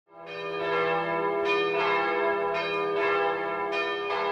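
Bells ringing, fading in at the start, with a new strike every half second to a second over a lingering hum.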